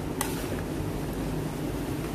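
A pan of creamy carbonara sauce simmering on the stove, a steady low rumble. A spoon clicks once against the pan near the start.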